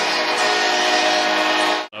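A stadium crowd cheering a touchdown under a long, steady chord played over the stadium sound system. The sound cuts off abruptly near the end.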